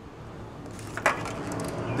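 A clear plastic clamshell takeout container being handled: one sharp crack about a second in, then a few lighter crackles.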